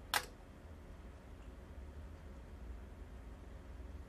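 A single sharp click just after the start as the bench power supply's power switch is turned off, followed by a faint steady low hum.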